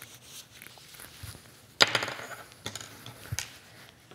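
Quiet rustling of a turned fabric strap being handled, with one sharp knock on the tabletop about two seconds in and a couple of lighter taps after it.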